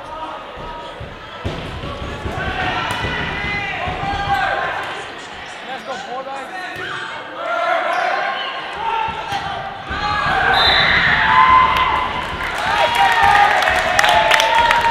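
Volleyball rally in a large gym: the ball struck and bouncing on the hardwood floor amid players' shouted calls. The shouting grows louder in the second half.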